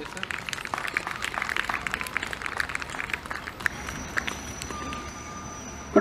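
Audience applauding, the clapping dense at first and thinning out after about three and a half seconds.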